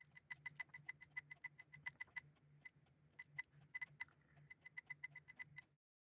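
Faint, quick series of short clicks, about five a second with a brief pause about halfway, as the buttons on the keypad of a Gakken GMC-4 4-bit microcomputer kit board are pressed in turn to test each key.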